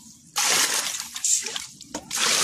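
Muddy water splashing as a metal bowl scoops it from a hole dug in sand and tips it into a plastic basin. A single splashing pour starts about a third of a second in and lasts just over a second.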